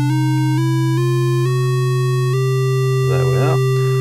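Studiologic Sledge synthesiser holding a low sine tone while a second, buzzier oscillator set to a pulse wave climbs in pitch one semitone at a time, four steps up, as its semitone knob is turned toward a fifth above to build a Hammond-style organ tone.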